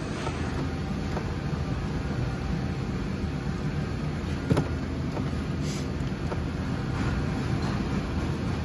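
Steady low rumble of a vehicle running, with one sharp click about halfway through.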